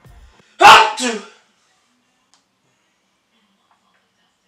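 A single loud, short vocal burst from a person, under a second long, harsh and noisy at its onset and ending with a voice falling in pitch.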